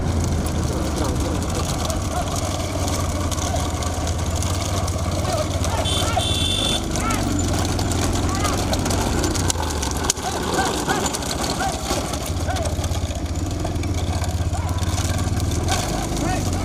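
Engine of a vehicle running steadily at road speed, with wind buffeting the microphone, and scattered shouts from people running alongside. A brief high tone sounds about six seconds in.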